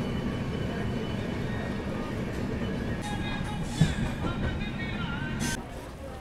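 Moving express passenger train heard from an open coach door as it rounds a curve: a steady rumble of wheels on rail, with one sharp knock about four seconds in. Music plays over it.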